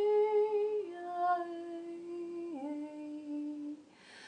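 A woman humming long wordless held notes, one voice, the pitch stepping down twice, about a second in and again past halfway, and fading out just before the end.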